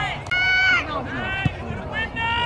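High-pitched shouted calls from girls' voices on a soccer field: one long call in the first second, over a low steady rumble.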